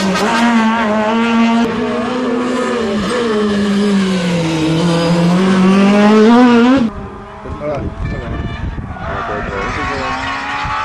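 Proton Satria Neo S2000 rally car's four-cylinder engine running hard close by, its pitch dipping and then climbing again as the car passes. About seven seconds in the engine sound cuts off sharply to a much quieter background.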